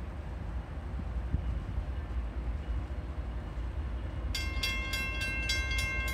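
Low steady rumble, then a railroad grade-crossing warning bell starts ringing about four seconds in, with rapid repeated strikes, as the crossing activates for an approaching freight train.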